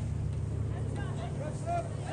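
Scattered distant voices calling out across a soccer field during play, over a steady low rumble.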